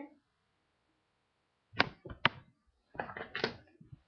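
Knocks and scuffing of a person climbing out through a window: two sharp knocks about half a second apart, then a rougher run of bumps and scrapes against the sill and frame.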